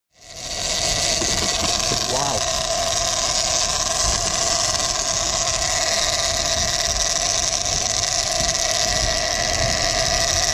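A sportfishing boat's engines running steadily under way while trolling, with the rush of wind and wake water on the microphone. The sound fades in over the first second and then holds level.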